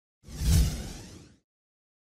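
A whoosh transition sound effect that swells quickly, peaks about half a second in and fades away over the next second, then silence.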